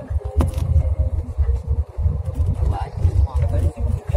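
Wind buffeting the microphone of a moving vehicle on a rough road: an uneven, choppy low rumble.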